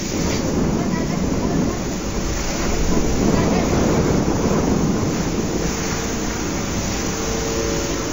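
Steady, loud rushing noise of a fire hose jetting water into a burning warehouse, mixed with the noise of the fire itself, swelling slightly in the middle.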